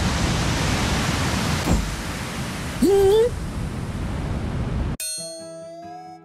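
Sea waves rushing onto a shore as a steady wash of noise, with a short rising vocal sound about three seconds in. At about five seconds the surf cuts off and music starts on a held note.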